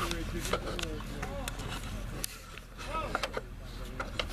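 Scattered light clicks and knocks from handling, with faint mumbled speech fragments, over a steady low hum.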